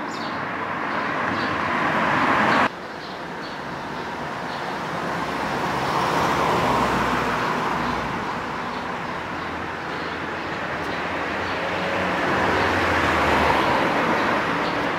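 Road traffic: motor vehicles passing one after another, each rising and fading away. The first pass breaks off suddenly under three seconds in, and faint bird chirps sound over it.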